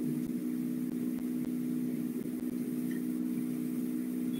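Steady electrical hum made of several evenly spaced tones, unchanging in pitch and level.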